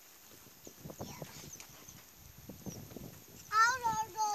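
Faint, irregular squelches and splashes of wading through deep, wet paddy mud. Near the end a child's loud, high-pitched voice cuts in with a wavering call.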